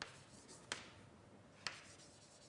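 Faint writing on a lecture board: three short, sharp taps, one at the start, one just under a second in and one near the end, over quiet room tone.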